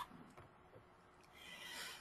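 Near silence, then a faint intake of breath near the end, just before speech resumes.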